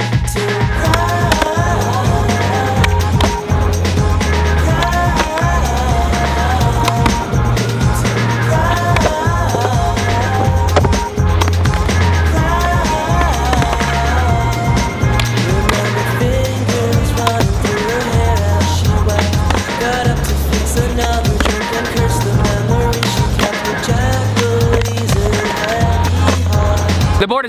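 Music with a stepping bass line and melody, with a skateboard rolling on asphalt and clacking through flatground tricks: tail pops and landings.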